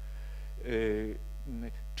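Steady electrical mains hum, with a man's voice held on one vowel for about half a second near the middle, like a hesitation sound.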